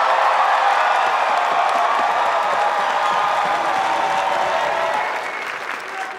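Large theatre audience applauding an introduction, dense and steady, tapering a little near the end.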